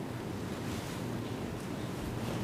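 Steady background noise of an open microphone: a low rumble with a hiss above it, and no distinct events.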